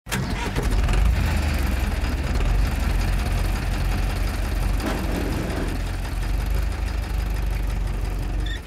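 An engine running steadily with a deep low rumble.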